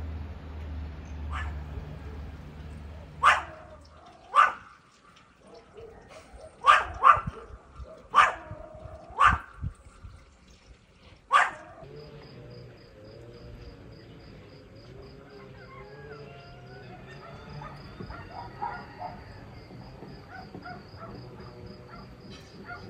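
A dog barking, about seven single barks spread over some eight seconds, over a low hum that fades out early. After the barks stop, a steady high thin tone carries on with faint chirps beneath it.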